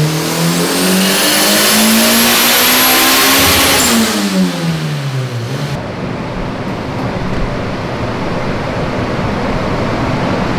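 Turbocharged Honda B18 non-VTEC four-cylinder making a full-throttle dyno pull under about 21 psi of boost: revs climb steadily to about 7,900 rpm with a high whine rising alongside, then drop away over a couple of seconds after the throttle is closed. After that comes a steady rush of noise from the dyno's cooling fan.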